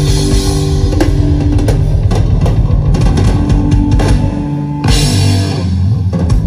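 Live rock band playing loudly: electric guitars and bass holding chords over a drum kit, with sharp drum hits and the cymbals coming back in near the end.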